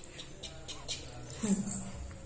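A four-month-old baby cooing: a short vocal sound about one and a half seconds in that falls in pitch and then holds briefly.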